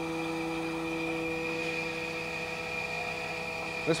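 Jones and Shipman 1300 grinder running with its hydraulic table traverse engaged: a steady hum with several held tones.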